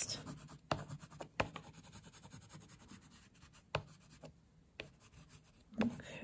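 Light green oil pastel rubbed in short strokes across paper: a soft, faint scratching with a few sharper ticks scattered through it.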